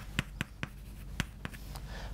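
Chalk writing on a chalkboard: a quick string of short taps and scrapes as figures are written.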